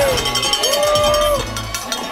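Trackside spectators whooping and cheering in long rising-and-falling calls, with cowbells clanging. The cheering drops away about one and a half seconds in.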